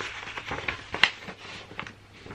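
Paper pattern instruction sheets rustling and crackling as they are handled and unfolded, with scattered sharp crackles, the loudest about a second in.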